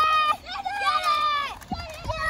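Children yelling as they charge: three high-pitched, drawn-out shouts without words, the middle one about a second long.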